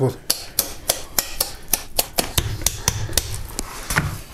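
Quick sharp clicks, about four a second, of a knife cutting through and snapping the rib bones of a large grass carp as the loin is freed from the ribcage.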